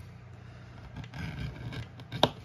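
Edge beveler scraping along the edge of a leather holster piece, a faint rasping stroke about a second in, over a steady low hum.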